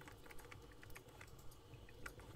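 Faint, irregular light clicks and taps over a low steady hum.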